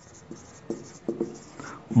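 Marker pen writing on a whiteboard: a run of short, faint scratchy strokes as a word is written.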